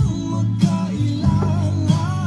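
Acoustic guitar music with a voice singing the melody over held chords.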